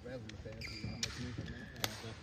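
Badminton rally: two sharp racket-on-shuttlecock hits about a second apart, the second near the end and louder, with brief high squeaks of court shoes just before the first hit and crowd voices murmuring in the arena.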